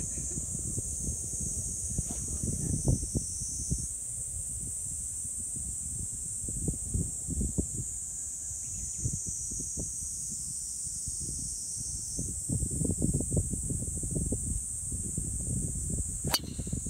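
Cicadas buzzing in a steady, high-pitched, continuous drone, with irregular low rumbles of wind on the microphone.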